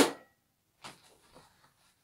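A thrown dart hitting a dartboard with a sharp knock and a brief ring, followed a little under a second later by a second, fainter knock.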